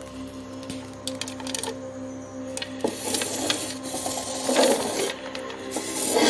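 Background music with steady held tones. From about three seconds in, clicks and scratchy rattling come from a plastic enclosure and its pellet bedding, loudest near the end.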